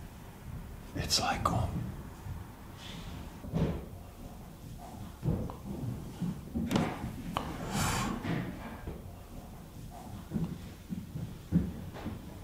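A scattered series of knocks, bangs and clatters from elsewhere in the house, like cupboard doors, drawers and objects being knocked about in a kitchen. They come at irregular intervals over faint low voices.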